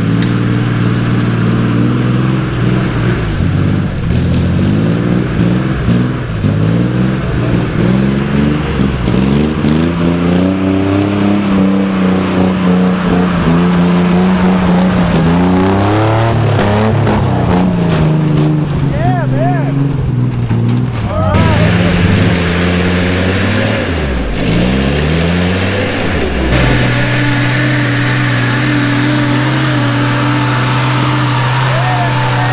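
Old Willys and Kaiser Jeep engines working up a steep, rutted dirt trail, the revs rising and falling over and over as the Jeeps crawl over the ruts. A little past three-quarters of the way in, the engine note settles to a steady pitch.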